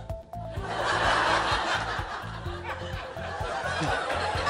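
Studio audience laughing, swelling about a second in and then thinning out, over background music.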